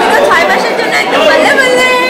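Overlapping chatter of many young people's voices talking at once in a crowded room.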